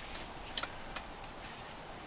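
A few light clicks from an aluminum camp-table frame being handled: two close together about half a second in, then one more about a second in, over a low background hiss.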